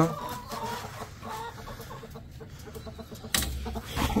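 Domestic chickens clucking, a few short soft calls. A sharp knock sounds about three seconds in, followed by brief rustling.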